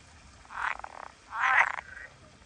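Green pond frogs croaking: two short calls, the second louder, about half a second and a second and a half in.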